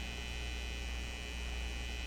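Steady low electrical mains hum with faint hiss, heard on the broadcast audio line while no one speaks.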